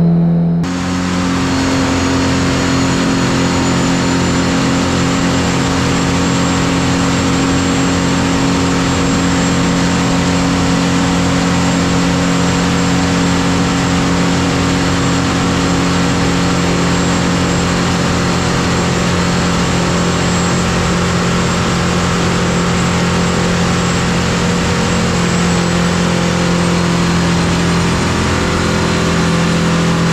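A Detroit Diesel 4-53T, a turbocharged four-cylinder two-stroke diesel, running loud and steady on an engine dynamometer during a test run on diesel fuel with water-methanol injection. A faint high whine rides on top and climbs slowly in pitch.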